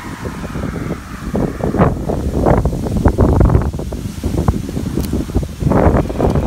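Wind buffeting the microphone: an irregular low rumble that comes in gusts, strongest in the middle and again near the end.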